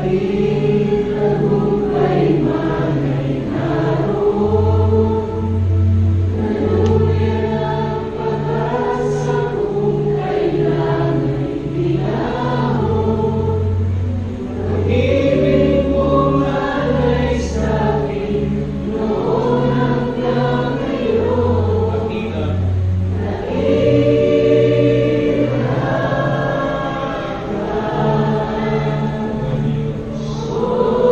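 Live worship band, with keyboard, bass guitar, electric guitar and drums, playing a praise song while several voices sing together. The bass moves in steady held notes under the singing.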